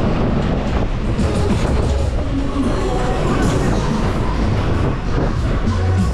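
Cars of a Mack Berg- und Talbahn ride running at speed around the hilly circular track, heard from on board: a loud continuous rumble of wheels on rails with a steady clatter.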